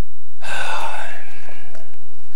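A man's single loud, breathy vocal exhalation, starting about half a second in and lasting about a second.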